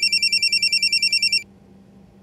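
Telephone ringing with a fast electronic trill, about eleven pulses a second. The ring stops about a second and a half in, ending one cycle of the ring.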